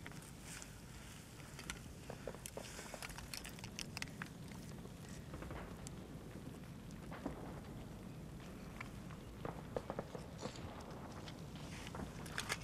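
Battlefield background sound from a film soundtrack: a low steady rumble with scattered small clicks, knocks and rustles.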